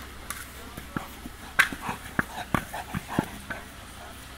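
A dog at play with a large ball: a quick, irregular run of about a dozen short knocks and brief little vocal sounds over about three seconds.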